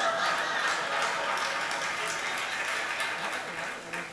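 Theatre audience laughing and applauding, a steady wash of clapping and laughter that dies away near the end, heard through a TV speaker.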